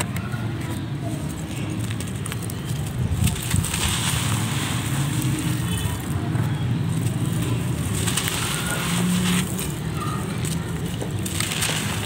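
Dry, molded mud balls being crushed and crumbled by hand, a gritty crunching with loose dirt pouring off, coming in spells about 3 s in, about 8 s in and near the end, over a steady low rumble.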